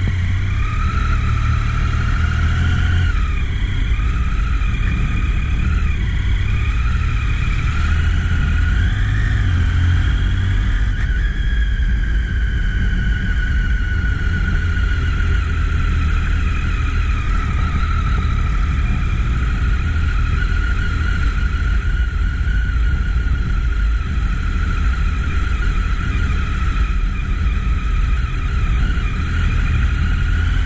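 Triumph motorcycle engine running as the bike rides along, its pitch rising and falling with the throttle for the first ten seconds or so, then holding steady. Under it is a constant low rumble of wind and road noise.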